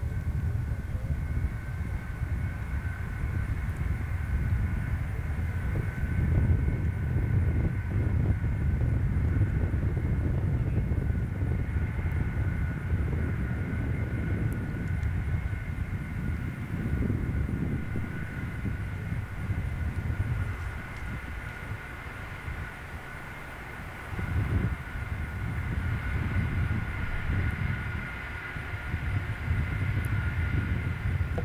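Boeing 747 Shuttle Carrier Aircraft's four turbofan jet engines at low power as it rolls slowly along the runway after landing: a steady rumble that swells and fades, with a thin steady whine above it.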